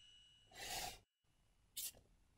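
A soft, breathy sigh about half a second in, followed by a short hiss just before the end.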